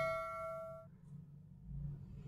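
A bell-like chime ringing out with several steady pitches, fading, then cut off suddenly just under a second in.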